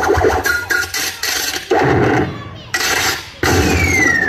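Recorded mime soundtrack over loudspeakers: choppy bursts of noisy sound effects that start and stop abruptly, with a falling whistle starting near the end.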